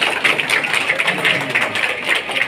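A crowd of people clapping, a dense patter of many hands.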